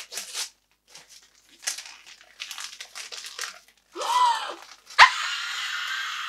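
Wrapping paper and tissue crinkling and tearing in short irregular rustles as a wrapped paperback is unwrapped by hand. About four seconds in there is a brief high vocal squeak, and about a second later a sudden loud excited scream cuts in and runs on.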